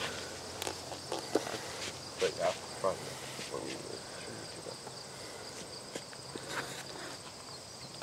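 Steady high-pitched chirring of insects in the grass and trees, holding at two high pitches, with a few faint distant voices and soft knocks.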